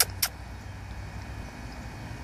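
Steady low outdoor background rumble, with two short sharp clicks in the first quarter second.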